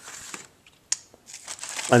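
Paper instructions and plastic packaging crinkling as they are handled, with a single sharp tap a little under a second in.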